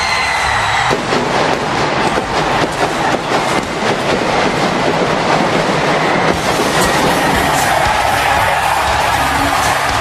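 Large arena crowd cheering loudly as entrance pyrotechnics go off, with a rapid crackle of bangs through the first half that gives way to a steady crowd roar.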